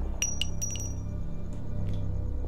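A low, steady music drone from a film score, with a quick cluster of light metallic clinks and a short ringing tone in the first second: a spent pistol cartridge case landing after a shot. Two fainter clicks follow later.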